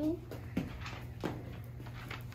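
Young children's voices speaking quietly in turn, one word ending at the very start and fainter ones after it, over a steady low hum.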